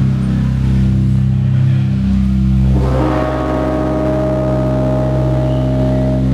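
Live band holding sustained, droning chords on amplified electric guitar and bass, with no drum hits. The chord changes about three seconds in.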